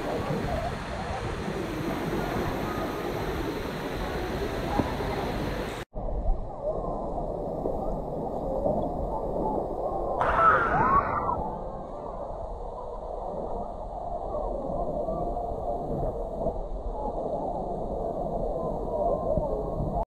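Water running and splashing on a water slide and into the pool, then, after a cut, muffled pool ambience of swimmers splashing and distant voices, with a brief louder burst about halfway through.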